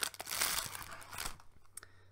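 Clear plastic cookie packaging crinkling as a cookie is taken out of it: dense crackling for about the first second and a half, then fading, with a couple of small clicks near the end.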